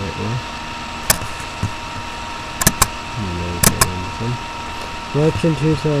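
A few sharp, dry clicks: one about a second in, then two quick pairs around the middle, between snatches of a man's voice.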